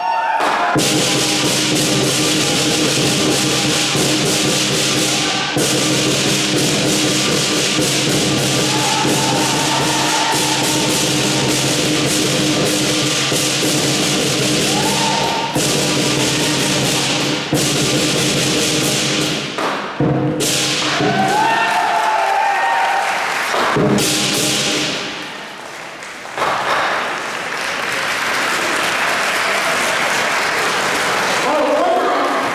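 Lion dance percussion band playing: a large lion drum with clashing cymbals and a gong, in a dense, steady rhythm. It breaks off briefly and goes quieter about two-thirds of the way through, then picks up again.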